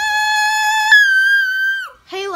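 A single high, held musical note that jumps up an octave about a second in and cuts off just before the end.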